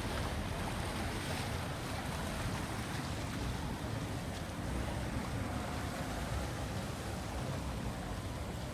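Motorboat water taxis running past, their engines mixed with the churning of their wakes on the canal water. Wind buffets the microphone in a steady, even rush.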